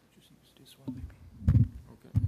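Microphone handling noise: low rumbles and a loud thump about a second and a half in as a microphone that has stopped working is handled and its plug checked, with soft whispered talk nearby.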